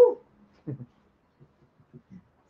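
A man's short "woo" exclamation, followed by a few faint, low knocks.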